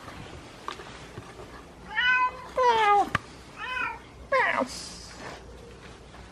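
Goat kids bleating: four short, high calls in quick succession starting about two seconds in, most of them falling in pitch.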